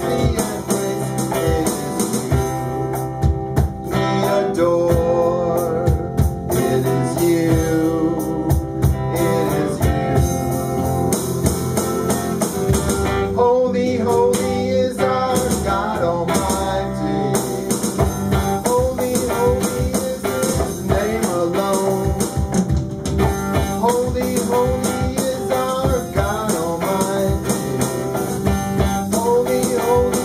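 A small live band playing a worship song: guitars, keyboard and drum kit, with singing at times.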